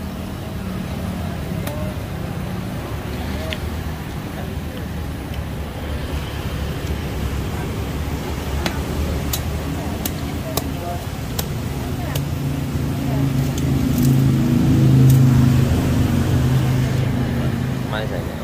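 Steady road-traffic rumble from passing motor vehicles, with one engine growing louder and passing about three quarters of the way through, the loudest part. A few sharp clicks are scattered over it.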